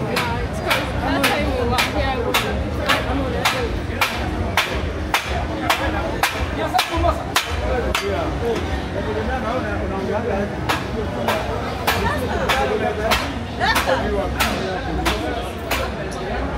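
Busy street ambience: crowd voices and general murmur, with a steady run of sharp clicks or knocks about twice a second throughout.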